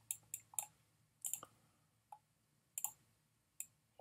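Faint, irregular clicks and taps of a stylus on a tablet surface during handwriting, about eight short ones scattered through the few seconds.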